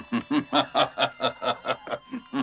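A man laughing: a quick, even run of deep chuckles, about five a second.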